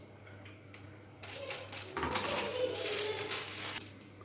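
Cashew nuts going into hot ghee in a frying pan: a clatter of nuts and sizzling that starts about a second in, grows louder about two seconds in and eases near the end.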